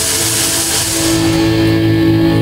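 Punk rock band playing live in a club: loud distorted electric guitars and drums. About a second in the cymbal wash thins out while held guitar notes ring on.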